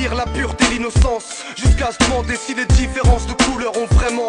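Hip hop track: a rapping voice over a beat with a heavy kick drum and deep bass.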